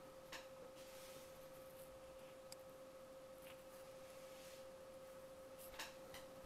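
Near silence: faint room tone with a thin steady tone running underneath, and a couple of faint soft noises near the start and the end.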